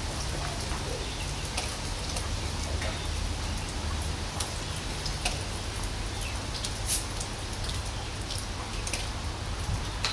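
Steady low rumble of wind on the microphone, with scattered light clicks and taps from footsteps on a dirt path and hands handling a soda bottle.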